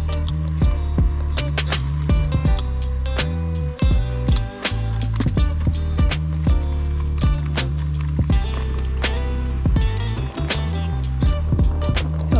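Background music with a steady beat and a deep bass line that moves in stepped notes.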